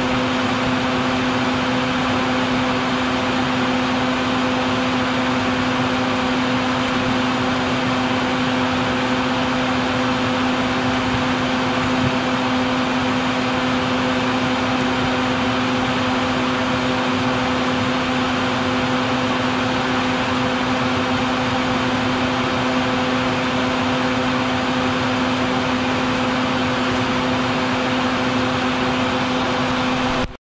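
A vacuum running steadily, drawing air through a corrugated hose whose nozzle sits at the entrance of a bald-faced hornet nest to suck up the hornets. It makes a constant hum under an even rush of airflow.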